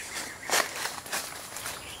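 Plastic grafting tape and leafy durian branches being handled close by: a few short crinkling rustles, the loudest about half a second in.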